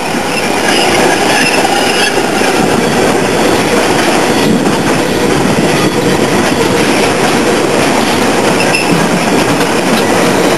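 A freight train's wagons rolling past close by: steady, loud wheel-on-rail noise, with a few brief high wheel squeals.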